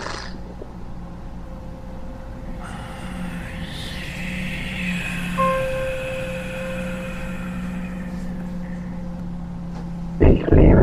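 Dark ambient drone: a steady low hum under a held mid tone. Higher, eerie tones swell in a few seconds in, bend in pitch and fade out again before the end.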